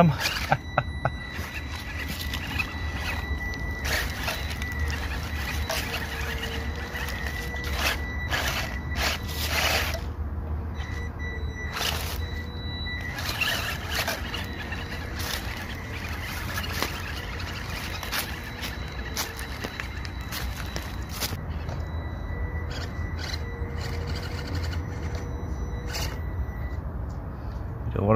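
Small brushed electric motor and gears of an SG1802 1/18-scale RC crawler truck whining as it creeps over leaves and roots. The whine comes and goes with the throttle over a steady low rumble, with scattered crunches and clicks.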